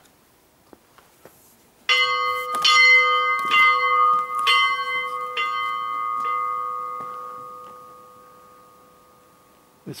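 Small church bell in a bell-cot, rung by a rope: about five strikes roughly a second apart, then the ringing dies away slowly over several seconds.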